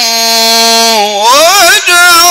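A male Quran reciter's voice chanting in melodic tajweed style, holding one long steady note, then rising into a wavering ornamented line with a brief break near the end.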